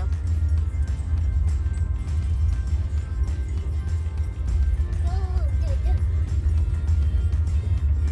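Steady low road and engine rumble inside a moving car's cabin, with music playing over it. A brief voice is heard about five seconds in.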